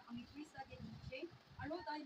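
Faint speech: a Bible passage being read aloud.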